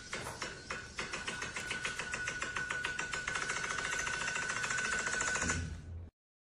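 A rapid series of clicks, about three a second at first, speeding up to a fast rattle about a second in, over a steady high tone that grows louder; it cuts off suddenly near the end.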